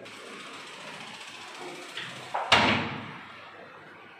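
A door banging shut: one loud bang about two and a half seconds in, dying away over about a second, after a steady hiss and a small click.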